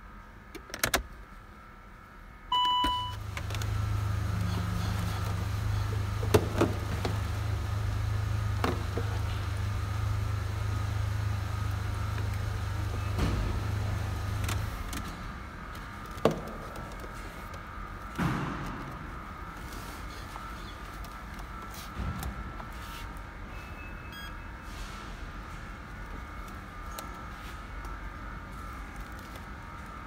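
Saab 9-3 with the ignition switched on: a short chime, then the car running with a steady low hum for about twelve seconds before it is switched off. Scattered clicks and knocks follow as a scan tool is connected under the dash, with a few faint beeps near the end.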